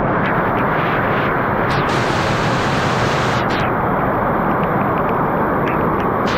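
Heavy rain pouring down in a dense, steady rush, with a few sharper splatters standing out now and then.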